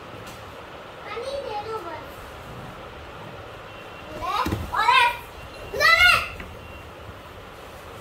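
A young child's excited wordless cries: a softer one about a second in, then two loud, high cries that rise and fall in pitch, at about four and six seconds in.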